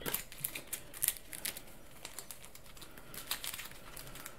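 Playing cards being shuffled and handled on a table: a run of irregular light clicks and flicks, thickest in the first second and a half and again briefly about three and a half seconds in.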